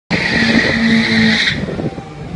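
A drag car's tyres squealing loudly on the strip, with its engine running beneath. The squeal stops about one and a half seconds in.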